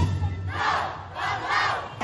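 A troupe of festival street dancers shouting in unison, a battle-cry-like group yell in two drawn-out calls, in a break in the parade drumming.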